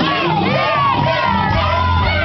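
A live vocal performance over a backing track with a steady bass, mixed with a crowd of voices shouting and singing along. One voice holds a long note through the second half.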